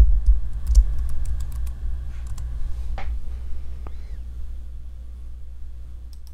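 Keystrokes on a computer keyboard: a handful of separate key clicks as a short name is typed, over a steady low hum.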